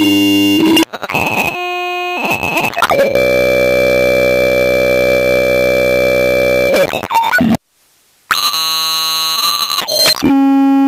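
Harsh electronic noise music: a string of loud, buzzing held tones that cut abruptly from one to the next, including one long held buzz in the middle. The sound drops out suddenly for under a second near the end, then comes back with a new buzzing tone.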